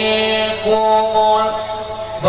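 A man chanting a melodic Quran recitation into a microphone, holding long notes that step slightly in pitch and easing off near the end.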